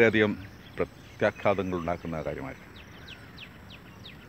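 A man speaking in short phrases, then a pause in which faint, short, falling high chirps repeat about three times a second.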